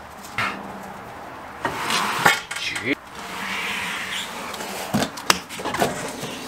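Metal clinks and knocks, with a stretch of scraping, as a heavy truck wheel and tire is handled and worked back onto the hub and wheel studs. The loudest clink comes a little over two seconds in, and a few lighter ones come near the end.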